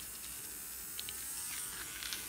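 Nail Master electric manicure drill running in forward with a flame-shaped cutter bit, a faint steady motor whine whose pitch creeps up slightly about a second in.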